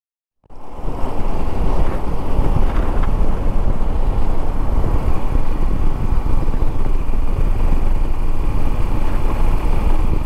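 Shineray SHI175 motorcycle being ridden: steady engine and road noise under heavy wind rumble on the microphone, starting about half a second in.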